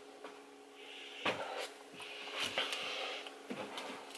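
Faint scuffing of a hand rubbing and pressing on a cloth-covered foam cushion wedged onto a cabinet shelf, in two short stretches, with a few light knocks.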